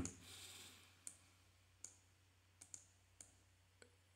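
A handful of faint computer mouse clicks, scattered irregularly against near silence.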